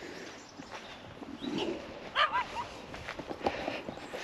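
A few short, faint animal calls in quick succession about halfway through, over quiet outdoor background.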